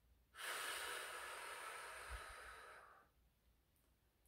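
A woman blowing one long, steady stream of air through her lips with no instrument, the breath used for playing a recorder. It starts about a third of a second in and fades out gradually near three seconds.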